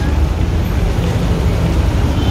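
Steady street noise from traffic on a busy downtown street: a continuous low rumble with a hiss over it and no distinct events.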